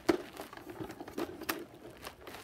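Handling noise from a plastic Nerf blaster being lifted and moved about: a sharp click at the start, then scattered light clicks and rustling.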